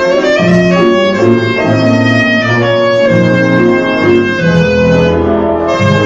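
Clarinet playing a solo melody line over band accompaniment, with bass notes moving about every half second underneath.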